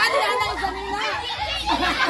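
Overlapping voices of a small group talking and calling out excitedly, with no single clear speaker.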